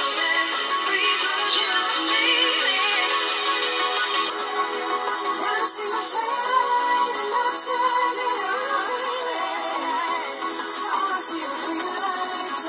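Electronic music with a sung vocal line playing through a smartphone's built-in loudspeaker. It sounds thin, with no bass. About four seconds in, playback changes from an HTC U11 to an HTC U11 Plus, and the sound turns brighter and a little louder.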